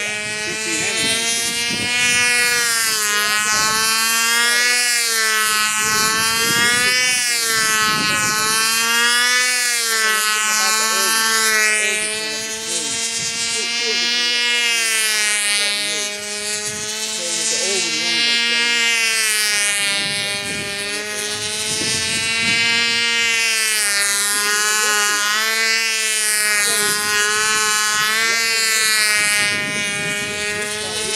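The small glow engine of a control-line stunt model airplane runs at full power in flight. Its high buzzing note rises and falls in slow waves as the plane circles and works through its manoeuvres.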